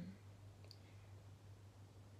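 Near silence: room tone with a steady low hum, and one faint small click under a second in.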